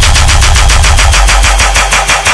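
Dubstep-style electronic dance music: a rapid run of sharp percussive hits, about a dozen a second, over a sustained bass line. Near the end the bass begins to pulse and gap in time with the hits.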